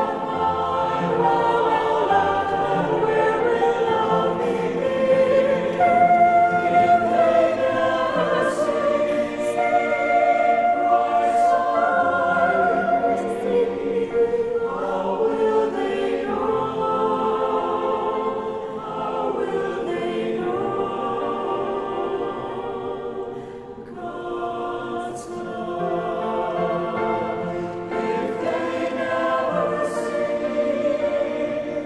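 A mixed virtual choir of men's and women's voices, recorded separately and mixed together, singing in parts with piano accompaniment. The notes are long and held, with a short breath between phrases about two-thirds of the way through.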